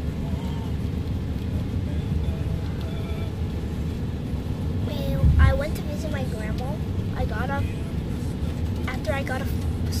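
Steady low road rumble of a moving car heard from inside the cabin, with a low bump about five seconds in. A child's voice talks softly over it in short stretches in the second half.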